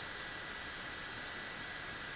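Steady background hiss of room tone with a faint, steady high whine, unchanging throughout; no distinct events.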